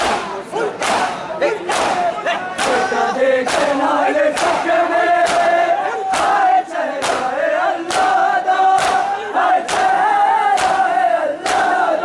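A crowd of men doing matam: open palms slap bare chests together in time, in sharp unison strokes about once a second, a little quicker at first. Men's voices chant in unison between the strokes.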